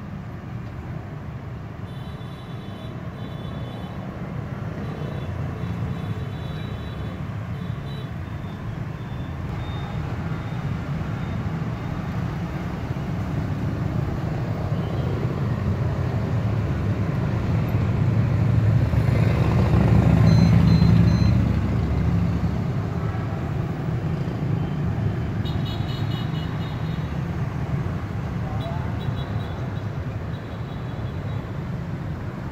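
Road traffic going by: a steady low rumble of passing vehicles that slowly builds to its loudest about twenty seconds in, as a louder vehicle passes, then eases off.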